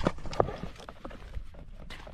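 A few sharp knocks and thuds amid rustling, from tackle being handled and moved about on the grass, with the camera jostled close up.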